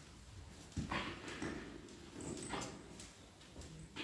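Rustling and handling noise from clothing and cloth rubbing against a clip-on microphone as the wearer moves, with a few soft knocks and shuffles, about a second in and again near the end.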